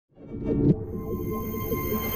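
Intro music sting: a swelling whoosh that peaks sharply under a second in, then settles into held tones over a low rumble.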